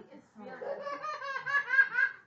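A person laughing, a quick run of 'ha' pulses that starts about half a second in and grows louder toward the end.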